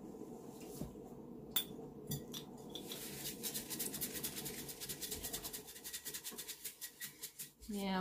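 Paper towel wet with rubbing alcohol scrubbed back and forth on a glass wine bottle to lift sticky label residue: a fast, even run of short rubbing strokes from about three seconds in, after a few light knocks.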